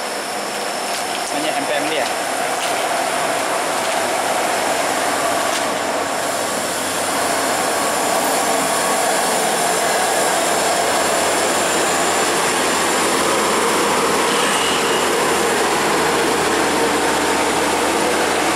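Diesel engine of a Mercedes-Benz OH 1526 NG coach labouring uphill on a steep grade. It grows louder about halfway through as the coach closes in, with a deeper rumble building near the end as it passes.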